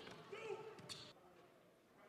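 Near silence: faint gymnasium room sound with a few faint knocks in the first second, fading away toward the end.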